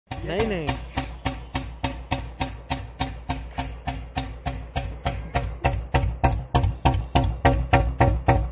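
Royal Enfield Standard 350's single-cylinder four-stroke engine idling through a free-flowing Patiala silencer on the stock bend pipe: a slow, even thump about three beats a second from the exhaust, growing louder and slightly quicker toward the end.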